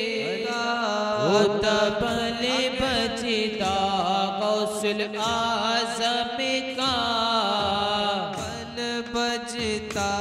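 A group of men chanting a devotional refrain together, with many daf frame drums beaten along with it.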